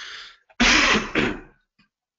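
A man clearing his throat: a loud, rough burst about half a second in, with a second push just after.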